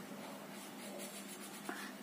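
Faint scratching of a blue felt-tip pen rubbing on paper as a small printed circle is coloured in.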